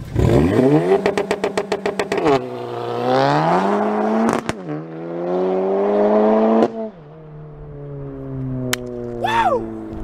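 Modified 2017 VW Golf R MK7's turbocharged 2.0-litre four-cylinder, with a big hybrid turbo and catless downpipe, held at one rev against the limiter in a rapid stutter, then launching and climbing hard through the gears. A sharp crack comes at the shift in the middle. The revs cut off near seven seconds in, and the engine note falls away as the car drives off into the distance.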